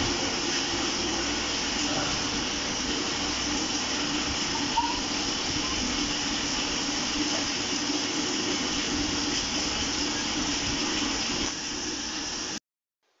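Steady background hiss with a low hum, with one faint click about five seconds in.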